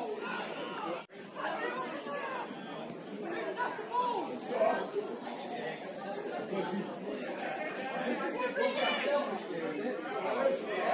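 Indistinct chatter and calls from several players and spectators at a football pitch, the voices overlapping with no clear words. The sound cuts out briefly about a second in, then the chatter resumes.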